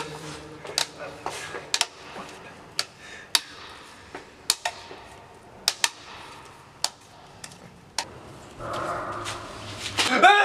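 Irregular sharp clicks and taps, about a dozen or more spread out, over a low hiss, with a soft rushing noise rising near the end.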